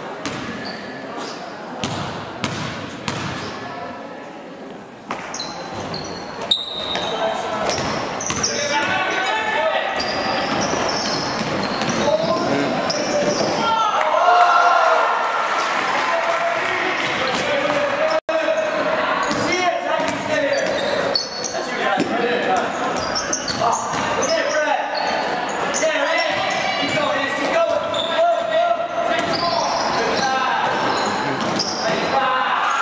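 Basketball bouncing on a hardwood gym floor during play, with many voices of players and spectators, echoing in a large gymnasium.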